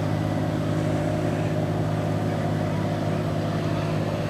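An engine running steadily at one unchanging pitch, a low even drone.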